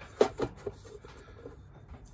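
Handling knocks: a sharp knock and a couple of lighter ones in the first second, then faint rustling, as a cigar box guitar body and a plate are held and shifted together by hand.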